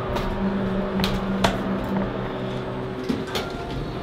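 Elevator car running, with a steady low hum over a rumble and a few sharp clicks and knocks. The hum dies away about three seconds in as the car stops.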